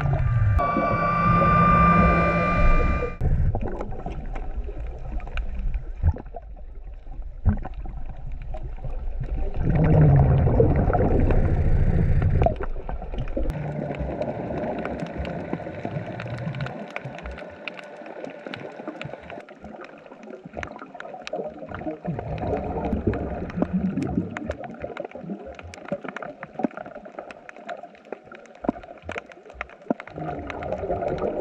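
Underwater sound of a diver breathing through a regulator on a surface-supplied air hose: exhaled bubbles gurgling and rumbling in surges, with a held whistling tone during the first three seconds. Scattered small clicks and knocks run through the quieter stretches.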